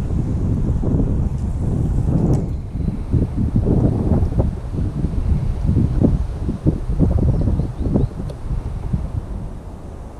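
Wind buffeting the microphone of a body-worn action camera: a loud, uneven low rumble in gusts, easing off near the end.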